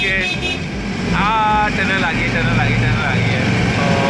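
Miniature ride-on diesel train running along its track, a steady low rumble, with a man's voice calling out over it about a second in.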